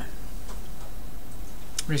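Steady low electrical hum and room noise, with one sharp click shortly before a man's voice comes back at the very end.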